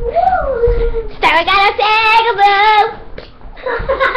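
A child singing wordlessly: a high note that falls in pitch, then a long held note that wavers.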